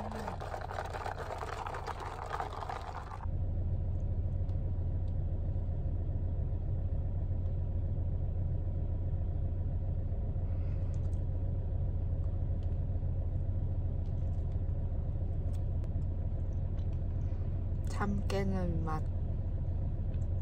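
Steady low rumble of a vehicle cabin, with a brighter hiss over it that cuts off about three seconds in. A brief voice sounds near the end.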